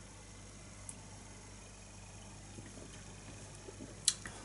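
Quiet room tone: a steady low hum under a faint hiss, with one small faint tick about a second in.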